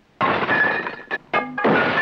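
Glass breaking: a sudden loud crash about a quarter of a second in and a second crash about a second and a half in, with ringing tones in between.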